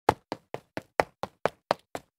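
A rapid, even series of short, sharp knocks, about four a second, with silence between them.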